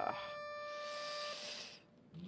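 A steady electronic buzzer tone in the competition hall holds for about a second and a half, then stops. Crowd applause rises over it and dies away near the end, and a lifter's shout cuts off right at the start.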